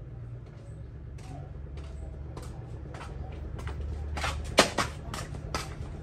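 Footsteps approaching: a run of short knocks that grows louder from about two seconds in, over a steady low rumble.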